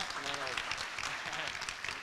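Audience applauding, a steady patter of many hands clapping, with a few voices over it at first.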